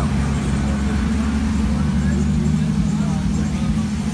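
Steady low drone of an engine running nearby, with a slight change in its pitch about halfway through.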